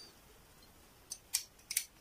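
Perfume spray bottle spritzed in short, sharp puffs: four of them, starting about a second in.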